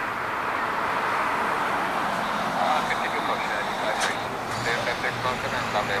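Twin jet engines of a Boeing 767-200ER at takeoff power as it climbs out, heard from a distance as a steady rushing noise that swells slightly. People's voices come in over it about halfway through.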